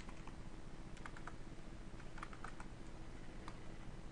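Computer keyboard keystrokes, scattered taps in small clusters, over a faint steady hum.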